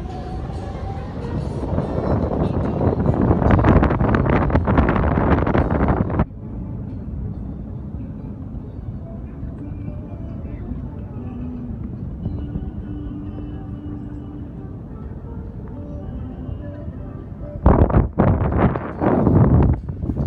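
Wind buffeting a phone's microphone in loud gusts high up on a parasail ride. It cuts off abruptly about six seconds in, leaving a quieter stretch with a few faint steady tones, and returns near the end.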